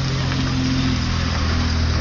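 Steady low hum of an engine running at idle, with an even hiss over it.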